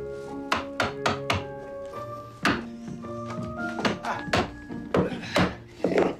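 A hammer striking a flat-head screwdriver wedged between wooden floorboards: about a dozen sharp knocks at uneven spacing, the screwdriver being driven in to lever a board up. Background music plays under the knocks.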